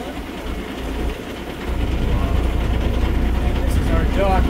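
Small passenger boat's motor running under way, a steady low rumble mixed with wind and water noise; the rumble gets louder about a second and a half in and then holds steady.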